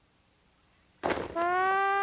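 Near silence, then about a second in a short noisy hit followed by a steady synthesized electronic tone that rises slightly and then holds at one pitch.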